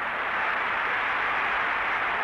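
A steady rushing noise from an old fight-film soundtrack, even and unbroken for the whole stretch.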